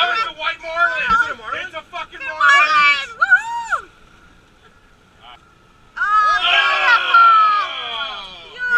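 Excited shouting and whooping from people on a fishing boat, loud and high-pitched, with a lull of about two seconds in the middle before the yelling picks up again.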